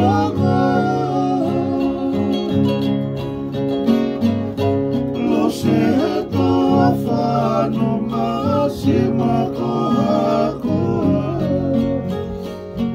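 A man singing to a ukulele and two acoustic guitars strummed together in a steady rhythm.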